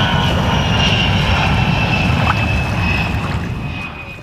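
Airplane flying past: a loud, steady rumble with a high whine that slowly falls in pitch, fading out near the end.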